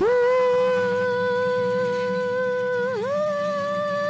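A woman singing one long held note into a microphone, with a brief dip in pitch about three seconds in, then the note held again and sliding upward at the end.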